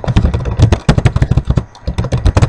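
Computer keyboard being typed on: a fast, irregular run of loud key clicks.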